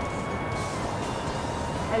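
Held notes of background music, stepping down in pitch about a second in, over a steady rushing noise.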